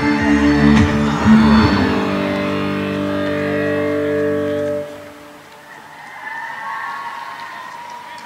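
A live band playing amplified music with guitar through a PA, ending on a held chord that cuts off abruptly about five seconds in.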